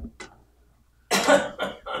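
A man's short, loud cough about a second in, running into laughter near the end, with a faint click just before.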